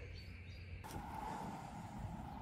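Metal detector giving a faint steady tone that starts just under a second in, over quiet open-air background noise.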